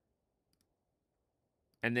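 Near silence in a pause of speech, then a man's voice begins near the end.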